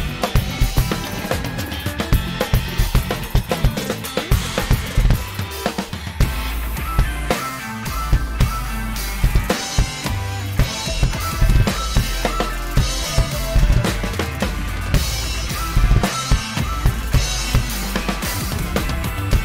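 Acoustic drum kit played hard, kick, snare and cymbals, along with an instrumental progressive rock track with guitar. A deep bass line comes in about six seconds in.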